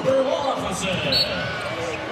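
Basketball being dribbled on a hardwood court, with steady arena crowd noise throughout.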